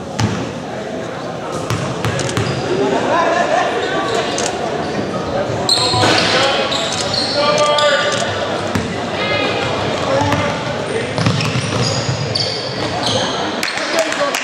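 Basketball game in an echoing gym: the ball bouncing on the hardwood court, sneakers squeaking, and players and spectators calling out.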